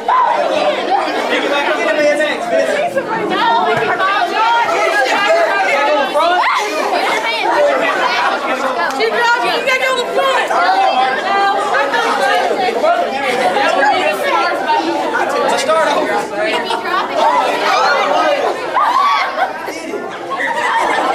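Crowd chatter: many people talking over one another in a large room.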